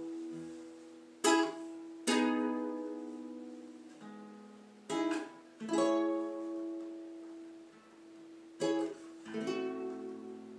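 Acoustic guitar played solo. Chords are struck in pairs about a second apart and left to ring out and fade, the pair coming three times, about every three and a half seconds.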